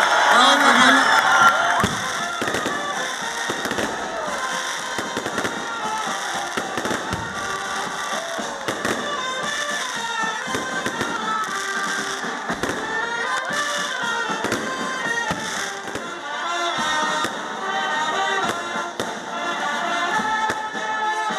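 Many fireworks bursting and crackling in rapid succession, with music playing underneath. It is loudest in the first second or two, where voices are also heard.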